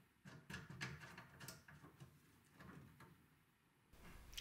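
Near silence, with a few faint light clicks in the first couple of seconds from handling the bookcase's wooden glass-panel door as its handle knob is fitted.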